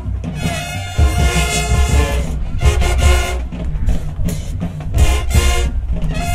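High school marching band playing: loud brass phrases with short breaks between them, over heavy low drum beats.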